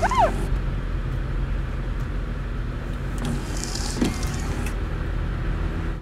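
Steady low drone of a car interior while driving in the rain, with the windshield wipers sweeping. There is a short squeal that rises and falls in pitch right at the start, a swish about three and a half seconds in, and a thump at about four seconds.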